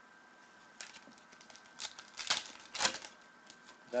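Trading cards and a foil card-pack wrapper being handled: a run of crinkles and clicks that starts about a second in and is loudest between two and three seconds in.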